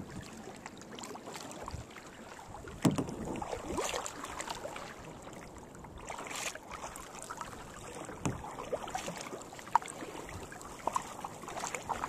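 Kayak paddle strokes: the blades dip and splash in calm sea water, giving several uneven swishes over a faint water hiss. The loudest comes about three seconds in.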